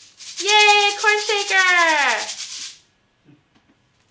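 A woman's voice holding a high, drawn-out call that slides down at the end, over a fast, even rattling of a hand-held shaker. It stops under three seconds in.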